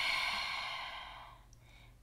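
A woman's long, audible breath out, a slow deliberate exhale that fades away over about a second and a half.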